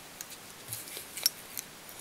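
Small handling sounds of fly tying at the vise as a silver oval tinsel rib is tied in. There are several brief, sharp ticks and snips, the loudest about a second and a quarter in.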